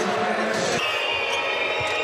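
Loud arena crowd noise at a handball match, with the thuds of the handball hitting the court. The crowd sound changes abruptly a little under a second in.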